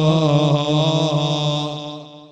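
A man's voice chanting one long, drawn-out note in a melodic, devotional style, the pitch held nearly steady with slight wavers, fading out near the end.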